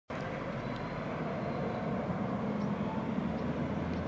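Distant motor traffic: a steady low rumble that grows slightly louder.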